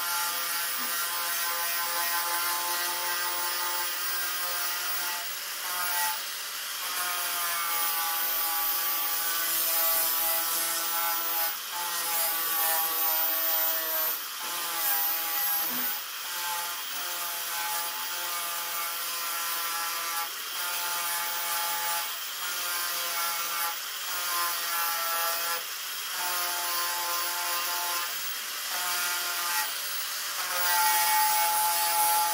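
Small handheld disc sander running over lead body filler on a door bottom, with a high whine and hiss whose pitch shifts and which breaks off and resumes every second or two.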